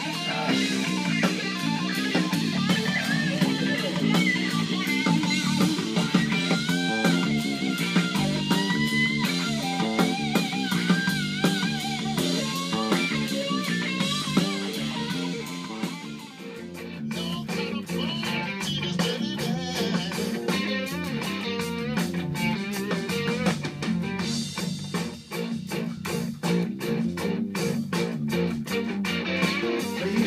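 Blues band playing: a guitar lead with bent, wavering notes over bass and drums. About halfway through the lead drops away, leaving the drums and bass groove.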